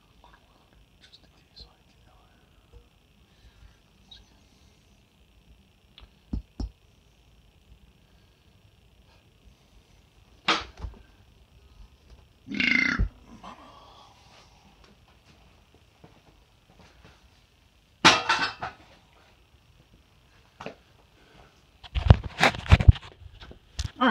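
Scattered knocks and bumps, a few seconds apart, with a quick cluster of sharp knocks near the end, over a faint steady hiss.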